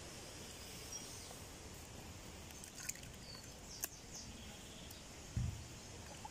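Faint outdoor ambience: a steady low hiss with a couple of faint clicks partway through and a soft thump near the end.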